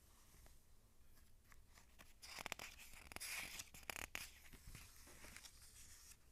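Paper rustling and crackling as a picture book's page is handled and turned, a burst of about two seconds starting about two seconds in.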